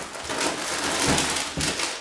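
Plastic food packaging rustling and crinkling as it is handled and pulled out of a cardboard box, with a couple of soft bumps about a second in.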